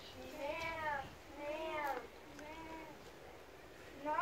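A child imitating a sheep's bleat, 'mäh', three long drawn-out calls that rise and fall in pitch, the third fainter.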